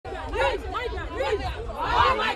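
Several women's voices talking over one another in a volleyball team huddle, a lively chatter of overlapping speech.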